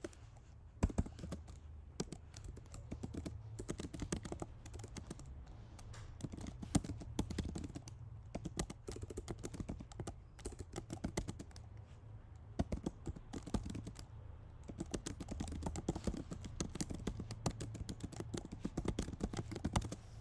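Typing on a computer keyboard: an irregular run of key clicks with short pauses, starting about a second in, over a low steady hum.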